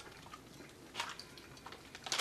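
Quiet room with a couple of faint, short clicks: one about a second in and a smaller one near the end.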